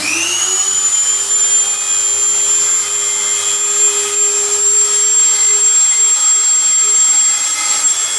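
Electric handheld rotary tool spinning up with a rising whine, then running steadily at a high pitch as it sands the surface of a carved wooden relief during final finishing.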